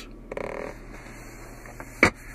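Handling of the car's center console armrest: a short buzzy creak, then a couple of faint clicks, over a low steady hum, ending in a sharp knock as the lid is moved.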